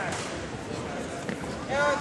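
Voices echoing in a gymnasium during a wrestling bout, with a loud shout near the end.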